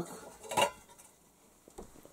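Metal kitchen graters knocking against dishes as they are taken off a shelf. There is one sharp clank about half a second in and a couple of faint knocks near the end.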